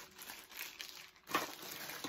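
Thin clear plastic packaging crinkling as it is handled, with one short, louder crinkle just over halfway through.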